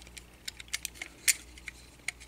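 A few light, irregular plastic clicks and taps as a tiny pilot figure is worked into the seat compartment of a vintage Transformers toy truck.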